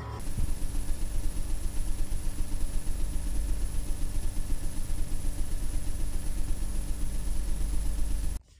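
Television static sound effect: a loud, even hiss over a low rumble that flutters rapidly, starting abruptly just after the start.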